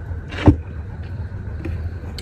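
A single short knock about half a second in, over a steady low hum.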